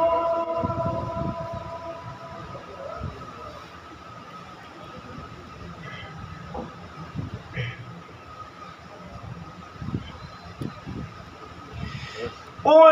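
The echo of a reciter's sung note through a public-address system dies away in the first couple of seconds. It leaves the low rumble of the open microphone and hall with a faint steady tone, and scattered soft thumps and handling noises as the reciter handles a plastic water bottle near the microphone.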